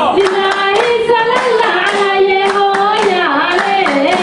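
Voices singing a Djiboutian folk song, a held melody that bends slowly in pitch, over steady rhythmic hand clapping.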